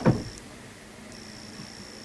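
A short, dull low thump right at the start, then quiet room tone with a faint, steady high-pitched whine.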